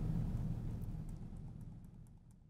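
A faint low hum fading steadily away, with a few very faint ticks.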